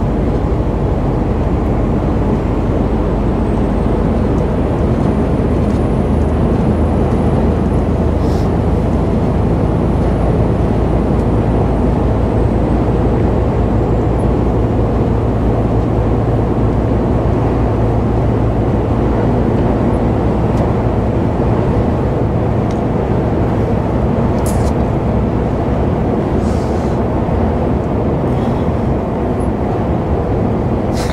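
Inside the cab of a Mercedes-Benz truck cruising on the motorway: a steady drone of the diesel engine with tyre and road noise, holding a low engine hum throughout.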